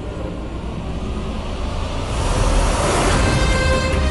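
Dramatic background-score whoosh over a low rumble, swelling in loudness from about two seconds in to a peak near three seconds.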